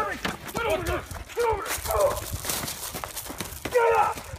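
Running footsteps crunching on a gravel driveway, a quick run of footfalls broken by short shouts.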